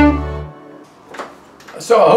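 Violin and backing track ending the tune: a held final violin note over a low backing chord cuts off about half a second in and rings away. A faint click follows in the quiet, and a man starts to speak near the end.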